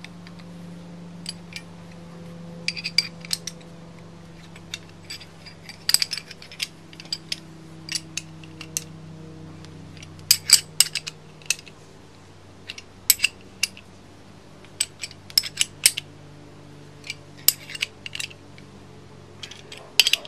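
Steel combination and ratcheting wrenches clinking against each other and against the nut and bolt of a harmonic balancer installer as it is turned to press the damper pulley onto the crankshaft. The clinks come irregularly and in small clusters, over a steady low hum.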